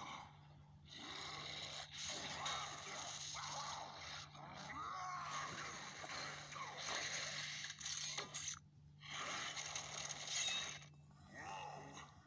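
A person's breathy mouth sound effects, gasps and hissing whooshes, in several bursts of a second or more each, over a faint steady low hum.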